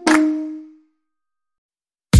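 Background music ending on a single plucked string note that rings and fades out within the first second, followed by silence.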